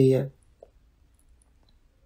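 A man's reading voice trails off just after the start, followed by a pause of near silence with one faint click.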